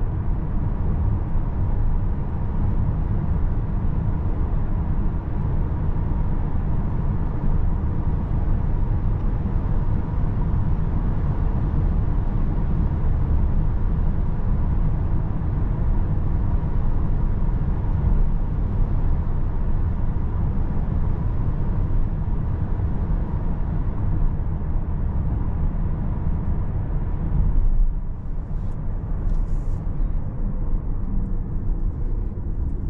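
Road and tyre noise inside the cabin of a 2023 Volkswagen ID. Buzz Cargo electric van cruising at about 70 to 85 km/h: a steady low rumble with no engine note. The noise drops near the end as the van slows.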